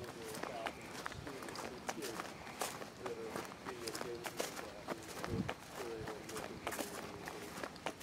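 Footsteps crunching through dry leaf litter and grass, one after another at a walking pace, with a faint voice-like sound underneath.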